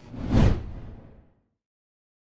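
Whoosh transition sound effect, a rushing swell that peaks about half a second in and fades away over the next second.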